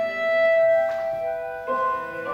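Instrumental music: a note held for over a second, then a new chord sounding near the end.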